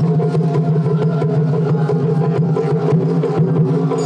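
Traditional Japanese festival float music: taiko drums beaten in rapid, continuous strokes over a steady low hum.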